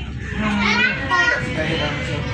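Children's high-pitched voices chattering and calling out over the low, steady rumble of a moving passenger train.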